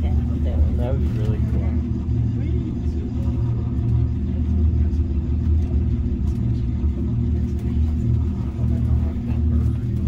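Steady low rumble and hum of the Aeri de Montserrat cable car cabin running along its cables, heard from inside the cabin, with faint passenger voices in the first second or so.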